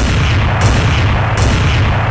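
Cartoon sound effect of a blast: a sudden loud boom with a long, deep rumble that fades away. Two sharper bursts of noise about half a second and a second and a half in.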